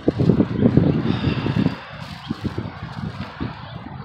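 Street traffic: a loud low rumble with a faint hiss for the first two seconds, dying down to a quieter steady background.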